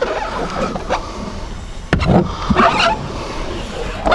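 Hand glass scraper dragged over the wet inside of a car window in several uneven strokes, clearing away any leftover glue before the tint film goes on.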